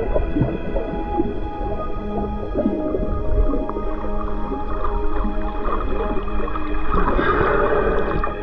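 Underwater sound picked up by a submerged camera: a low rumbling, churning water noise, with a louder swell about seven seconds in, under steady background music.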